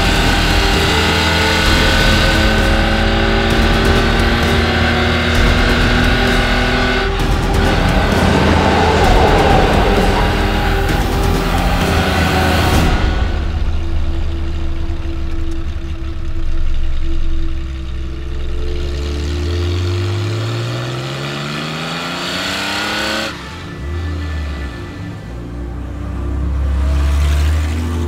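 1969 Porsche 911 T's air-cooled flat-six engine running under way, loud for the first half, then quieter, with the revs climbing steeply about twenty seconds in. A music score plays underneath.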